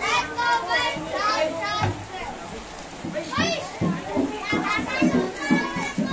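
Children's voices: several high-pitched kids calling out and chattering over one another, with a few lower adult voices mixed in.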